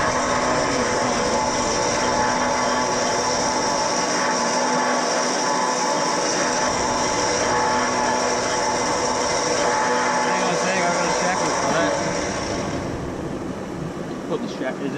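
Electric winch on a 4x4 running with a steady mechanical whine as it works the synthetic winch rope, stopping about 13 seconds in.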